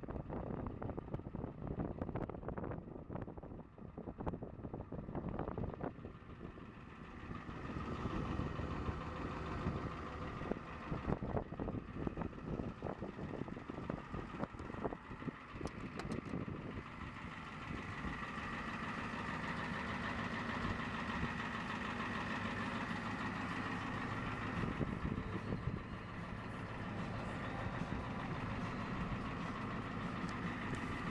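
A vehicle engine idling steadily, with wind buffeting the microphone in the first several seconds.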